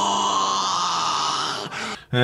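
Sound from an inserted 'mind blown' meme clip: a long, steady held vocal tone with a high shimmering ring over it, cutting off just before the end.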